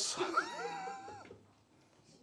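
A person's high-pitched, drawn-out vocal sound, about a second long, rising briefly, holding its pitch, then dropping away.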